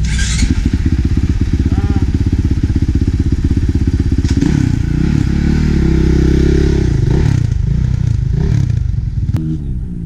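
2018 Honda CRF450R's single-cylinder four-stroke engine idling with a fast, even firing beat. From about four and a half seconds in it is revved up and down in a series of throttle blips.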